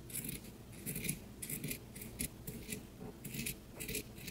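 Fabric scissors snipping through knit sweater fabric in a quick, uneven series of cuts, trimming off the sweater's bottom edge along the hem tape.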